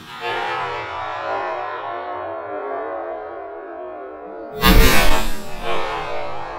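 Background music, broken about four and a half seconds in by a loud bang from a double-barrelled shotgun firing at a woodcock in flight, with a smaller bang about a second after.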